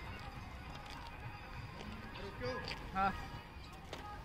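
Faint voices talking over steady outdoor background noise, with one short sharp click just before the end.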